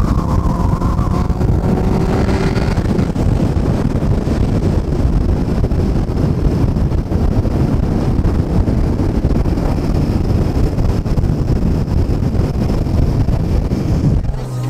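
Steady low rumble of engine, tyre and wind noise heard from inside a 1999 Honda Civic driving at speed. A faint falling engine note in the first couple of seconds fades into the even drone.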